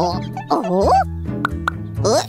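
Cartoon soundtrack: background music with steady low notes under a wordless, swooping cartoon-character vocalization, with two short pop effects about a second and a half in.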